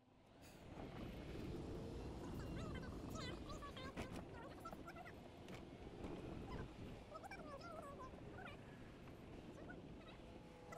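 Many short bird chirps, faint and scattered, over a low steady rumble from riding along a golf cart path.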